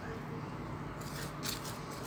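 Faint scraping of a wooden spatula stirring white clay powder and liquid hydrolate in a ceramic bowl, with a few light scrapes in the second half.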